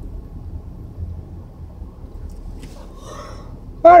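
Steady low road and engine rumble inside the cabin of a moving Nissan Maxima, with a faint short hiss about three seconds in.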